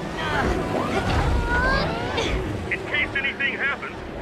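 A boy's voice crying out and groaning with strain, without words, over a steady low underwater rumble. Near the end comes a quick run of short high chirps.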